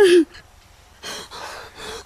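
A woman crying: a wailing cry that falls in pitch and breaks off just after the start, then two ragged, gasping sobs for breath.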